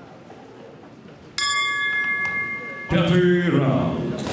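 Boxing ring bell struck once about a second and a half in, ringing steadily for about a second and a half: the signal that the fifth round begins. Before it, a low hall murmur; near the end, loud voices break in over it.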